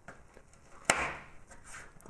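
A knife cutting through a crisp jam-filled shortbread cookie: one sharp crack about a second in as the blade goes through, trailing off briefly.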